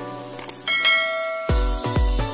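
Two quick click sound effects, then a bright notification-bell chime that rings and fades. Electronic music with a heavy bass beat comes in about three quarters of the way through.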